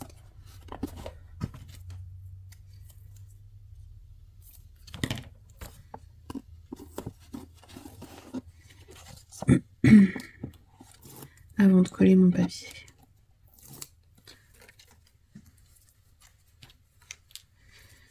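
Hands working a cardboard box, satin ribbon and double-sided tape: scattered rustles, scrapes and small clicks as the tape is peeled and the ribbon pressed onto the kraft board. Two short vocal sounds come about ten and twelve seconds in.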